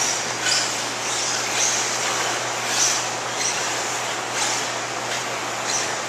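Several 1/8-scale electric RC off-road buggies racing on a dirt track: a steady wash of motor, drivetrain and tyre noise, with brief high whines as cars pass.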